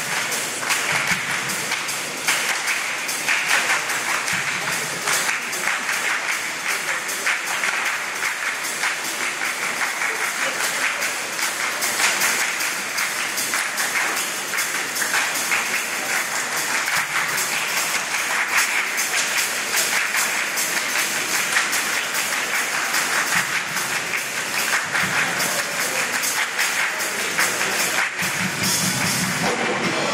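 A choir singing with steady rhythmic hand claps.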